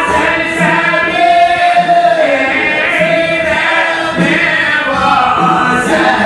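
A group of men singing a religious chant together, a sung melody with held notes.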